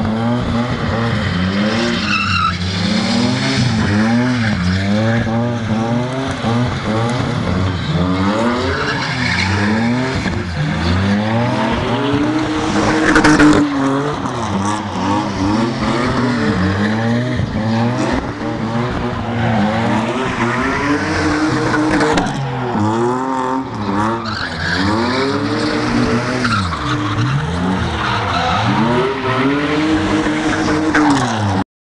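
BMW E34 5 Series drifting in circles: its engine revs rise and fall over and over, every second or two, over the steady screech of spinning, smoking rear tyres.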